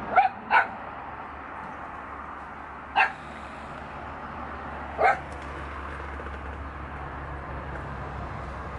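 Small black-and-tan dog barking in single short barks: two quick barks at the start, then one about three seconds in and another about five seconds in.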